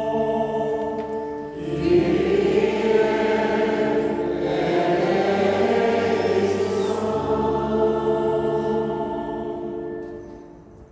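Choir singing a slow sacred piece in long held notes, swelling about two seconds in and fading away near the end.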